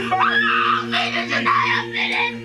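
A person screaming and wailing in distress, the cries swooping up and down and breaking off, over steady sustained background music tones.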